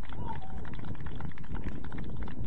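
Wind buffeting an outdoor microphone: a steady low rumble, with a brief faint shout about a quarter-second in.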